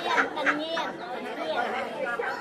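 Speech only: voices talking, softer than the louder talk just before and after.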